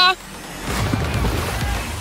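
A big splash as a person cannonballs into a swimming pool: a rushing noise with a deep rumble that builds about half a second in and carries on. It follows the tail end of his shout.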